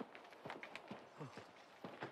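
A faint, irregular run of quick knocks, about four a second, each with a short falling tail.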